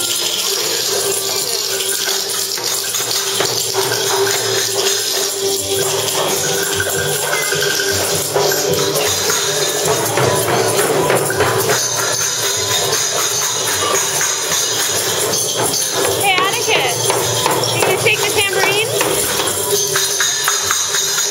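Small plastic hand tambourines jingling, several at once and out of time with each other, in short uneven shakes.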